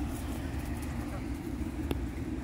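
Faint peeping of Muscovy ducklings over a steady low rumble, with a sharp click near the end.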